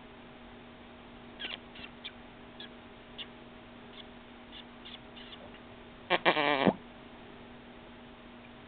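A 4½-month-old baby making a short, loud squealing vocal sound that wavers in pitch, about six seconds in, after a few faint clicks.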